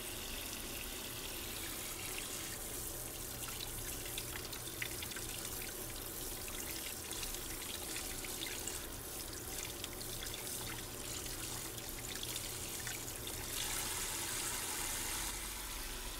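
Kitchen faucet running steadily into a stainless steel sink, the spray splashing over boiled chicken breasts in a metal colander as they are rinsed by hand. The hiss turns a little brighter near the end.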